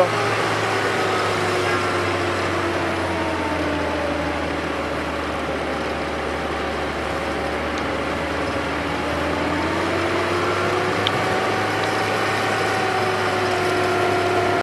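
A Grove AMZ66 boom lift's Nissan A15 four-cylinder gasoline engine running steadily, its pitch sagging slightly through the middle and rising back up near the end.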